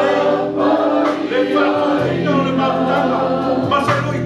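Background gospel song with a choir singing over sustained bass notes.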